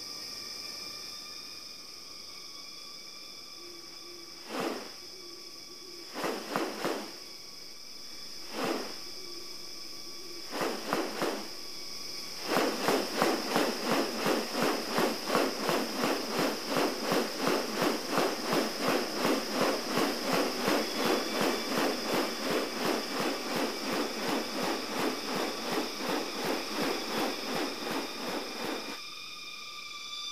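Display sounds of a male superb bird-of-paradise courting a female: a few scattered calls, then about halfway in a fast, even series of pulses at about two a second that runs until near the end, over a steady high insect drone.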